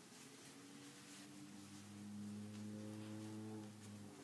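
Faint low, steady closed-mouth hum from a man, held on one note that swells about two seconds in and fades near the end.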